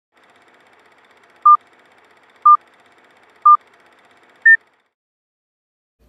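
Four short electronic beeps one second apart, the first three at the same pitch and the last one higher: a countdown beep sequence. A faint hiss runs under them.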